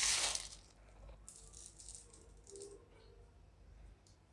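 Dry boondi (small fried gram-flour pearls) pouring onto a plate and rattling: a short, louder rush just as it starts, then lighter, scattered rattles as more is sprinkled.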